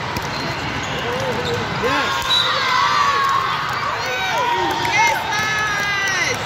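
Indoor volleyball rally in a large hall: the ball being struck, then several voices shouting and cheering from about two seconds in as the point is won.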